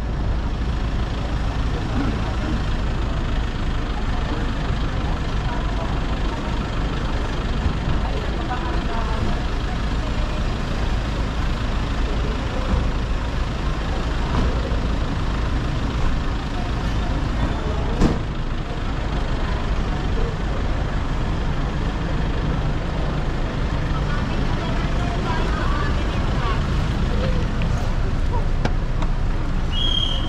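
Busy curbside traffic ambience: a steady low rumble of idling and passing vehicles with people talking in the background. A single sharp knock about eighteen seconds in.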